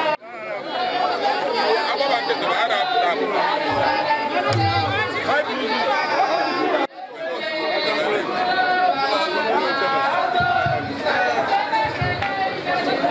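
A crowd of many people talking at once, with voices overlapping throughout. The sound breaks off abruptly for a moment twice, right at the start and about seven seconds in.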